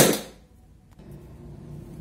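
A single sharp clack from a plastic toolbox being opened, dying away within half a second.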